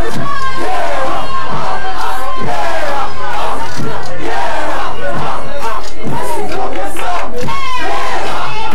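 A packed crowd shouting and yelling over one another around a performer on a microphone, very loud, with a steady low hum underneath.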